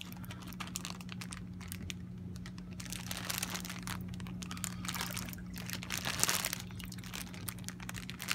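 Plastic fish-transport bag crinkling and crackling irregularly as it is handled at the water surface to let fish out, over a steady low hum.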